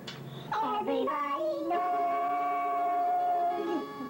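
Sped-up, chipmunk-pitched singing by a man and a woman, a few quick notes that end on one long held note of about two seconds, which drops in pitch at its close.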